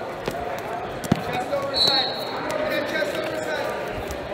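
Wrestling tournament gym ambience: a murmur of background voices and shouts in a large hall, with scattered thumps and slaps from wrestlers on the mats. There is one sharp thump about a second in and a brief high squeak near the middle.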